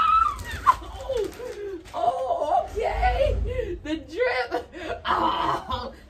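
Voices exclaiming and laughing, with no clear words.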